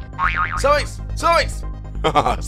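Cartoon-style comedy sound effects over background music: a wobbling pitch glide, then two short boing-like sweeps that rise and fall in pitch.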